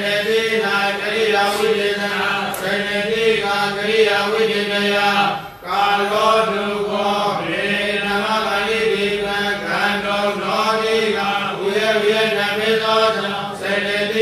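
A monk's voice reciting a Buddhist text aloud from a book in a steady, chant-like monotone, pausing once for breath about five and a half seconds in.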